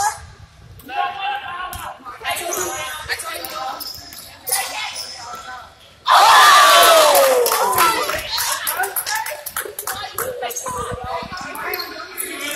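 Basketball being dribbled on a hardwood court, with players' voices echoing in a large gym. About six seconds in comes a loud, drawn-out voice that falls in pitch.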